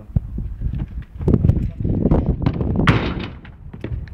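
A string of sharp knocks and thuds, typical of a football being kicked and bounced during a drill, with a heavier low rumble from about one to three and a half seconds in.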